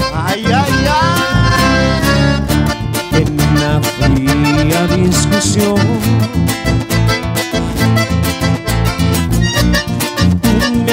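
A live band playing an instrumental stretch of Latin dance music over a steady beat, with a gliding lead melody in the first couple of seconds.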